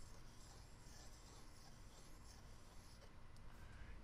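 Faint scraping of a steel chisel edge pushed across a wet water stone, honing a micro bevel at about 25 degrees, over a low steady hum.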